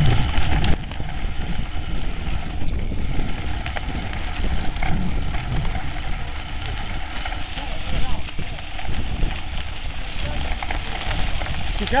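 Wind buffeting the microphone of a camera on a moving mountain bike, with knobby tyres rolling over a dirt and gravel track.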